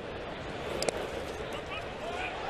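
Ballpark crowd murmur, with one sharp knock just under a second in as a pitch in the dirt bounces off the catcher and away.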